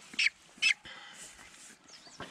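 Young mulard duck giving short, high peeping calls, two in the first second, followed by fainter rustling.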